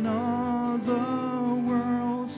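A man singing a worship song in long held notes, accompanied by his own strummed acoustic guitar.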